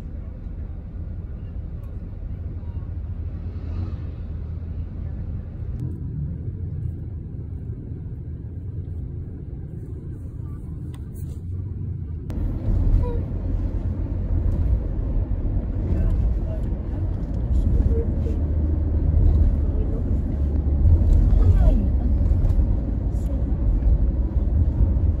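Road noise inside a moving car's cabin: a steady low rumble of engine and tyres. About twelve seconds in the sound changes suddenly and the rumble grows louder, with scattered light clicks.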